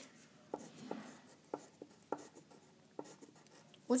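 Pencil writing on paper: a series of short scratching strokes as an equation is written out.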